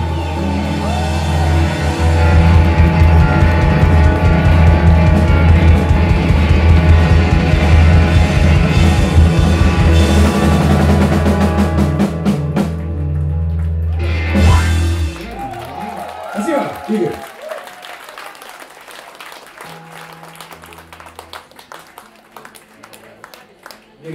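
A live rock band with electric guitars, bass guitar, drum kit and keyboard plays the final bars of a song and ends on a held chord about fifteen seconds in. Audience applause and a few voices follow.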